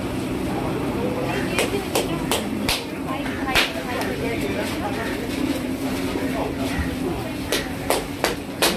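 Busy street-food stall: background voices and a steady hum, with a run of sharp clacks from under two seconds in to about three and a half, and two more near the end.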